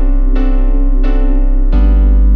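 DJ remix music: keyboard chords struck about every two-thirds of a second over a deep held bass, which moves to a new, louder bass note near the end.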